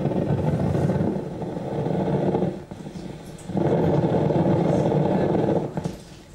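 Electrical activity of hand muscles, picked up by a wrist electrode and played through a loudspeaker: a loud, dense, low crackle. It drops away for about a second near the middle as the muscle relaxes, returns, and stops just before the end.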